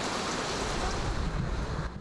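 Steady rushing noise of wind buffeting the microphone at a pond's edge. It drops away abruptly just before the end.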